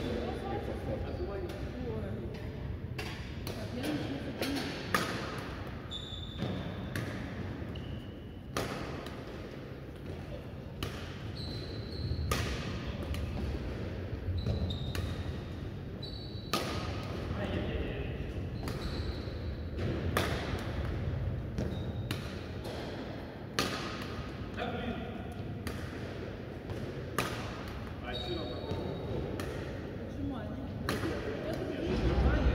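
Badminton racket strikes on shuttlecocks in a drill, sharp hits about once a second, with short high squeaks from shoes on the court floor, ringing in a large hall.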